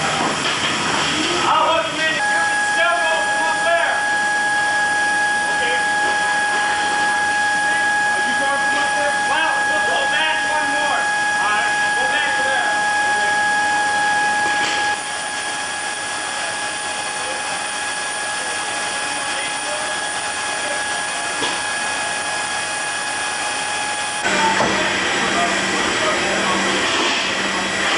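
Loud, steady hiss and roar of running aircraft machinery inside a cargo hold. Through the first half a high, steady whine sits over it. About halfway through the whine stops and the noise drops slightly.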